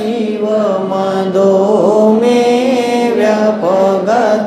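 A man chanting a Sanskrit verse in a slow melodic recitation, holding long notes that glide gently in pitch.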